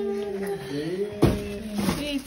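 A small boy's voice held in a long, wavering sing-song note, with a thump about a second in.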